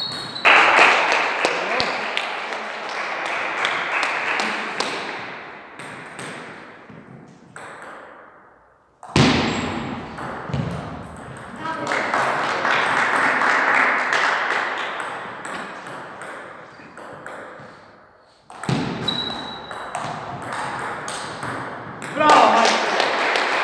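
Table tennis ball clicking sharply off bats and table during rallies, echoing in a large hall. Long stretches of voices and hall noise start suddenly about half a second, nine seconds and nineteen seconds in, and each fades away slowly.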